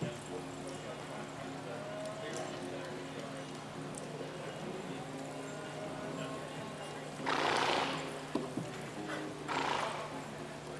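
Quiet indoor-arena background with a steady low hum. Near the end it is broken twice by a short, breathy burst of noise, each under a second long.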